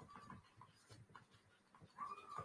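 Near silence, with a few faint soft ticks of a stylus writing a word by hand.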